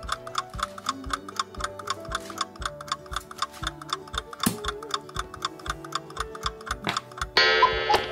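Countdown-timer sound effect: a clock ticking steadily over a music bed with low bass notes, then a loud ringing tone near the end as the count runs out.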